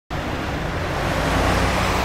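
Road traffic noise: a steady rush of passing vehicles, growing slightly louder.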